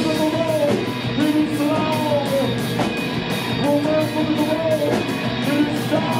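Rock band playing live in a club: dense distorted guitars, bass and drums, with a pitched phrase that rises and falls about every one and a half to two seconds.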